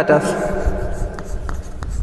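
Chalk writing on a chalkboard, with a few short chalk strokes about a second in as a word is written.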